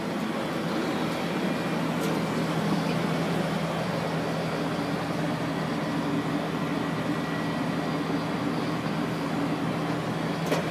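Heidelberg QM-DI offset printing press running under power with no job on it: a steady mechanical hum from its rollers and drive, with one faint click about two seconds in.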